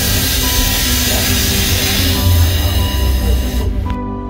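Electric Renon railway train running, a steady low rumble and hiss heard inside the carriage, with background music laid over it. The train noise cuts off suddenly just before the end, leaving only the music.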